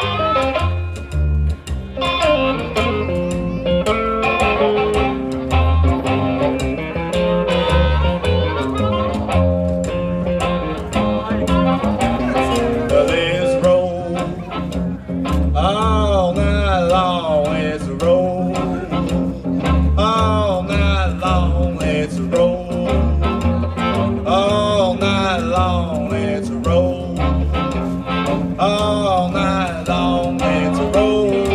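Live blues band: a harmonica played into a microphone carries held notes over an electric archtop guitar and a plucked upright bass keeping a steady beat. About thirteen seconds in, a man starts singing, with bending, wavering notes.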